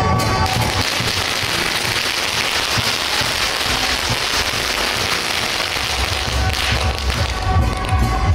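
A string of firecrackers going off in a dense, rapid crackle for about six seconds, starting about half a second in. Band music with steady held notes plays under it and comes through clearly again near the end.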